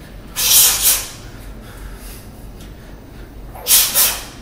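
Sharp hissing exhalations of a boxer throwing quick punches: one short burst about half a second in and another near the end.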